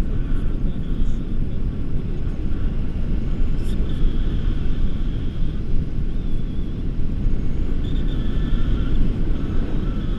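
Wind buffeting the microphone of a camera on a selfie stick during a tandem paraglider flight: a loud, constant low rumble that rises and falls without a break.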